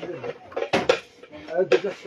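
Kitchenware clattering as it is handled, with two sharp clanks just under a second in.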